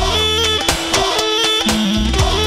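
Live band playing lively folk dance music, a melody over a bass line with a steady drum beat.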